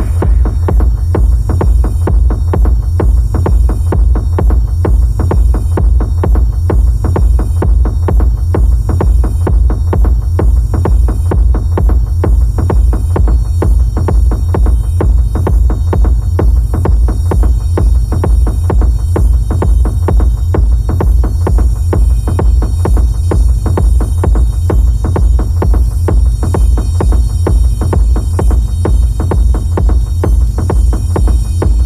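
Techno track in a DJ mix: a steady, evenly repeating kick drum and deep bass pulse carry the sound, with only thin, sparse sounds above them.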